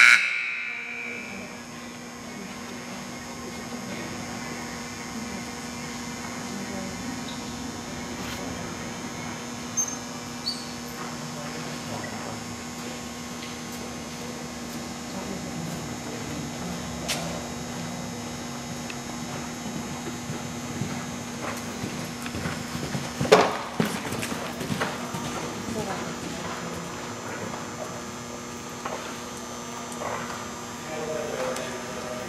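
A horse cantering on soft arena footing, its hoofbeats faint under a steady electrical hum, with one sharp knock about two-thirds of the way through.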